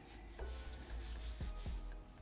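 Felt-tip marker rubbing across paper in short inking strokes, a dry scratchy hiss that comes in a few separate strokes.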